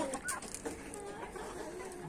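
Chickens clucking softly in the background.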